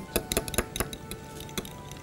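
A metal fork clinking quickly and irregularly against a small glass bowl while beating egg yolks into hot milk and cream, tempering the yolks so they don't curdle.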